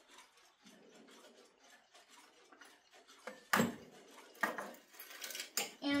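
Handling a small twin-bell alarm clock: fairly quiet at first, then a few sharp knocks and clicks in the second half as the clock is worked and set down.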